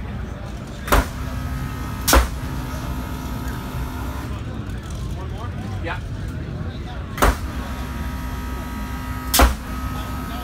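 Pneumatic DRS actuator on a Subaru WRX STI race car's rear wing snapping the wing down and back up. There are four sharp clacks in two pairs, the first pair about a second apart and the second about two seconds apart, each movement taking a split second under 10-bar air pressure. A thin steady hum runs alongside each pair.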